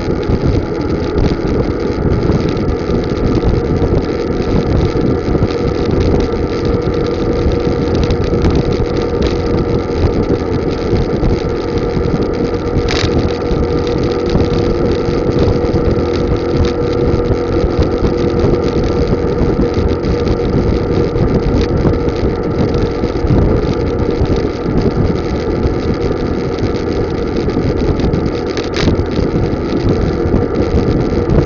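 Moving vehicle's engine running at a steady speed under wind noise on the microphone and road noise, with a steady hum in the engine note throughout. Two brief sharp clicks, one about halfway through and one near the end.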